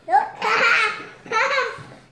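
A young girl laughing and squealing excitedly in a high-pitched voice, in two bursts.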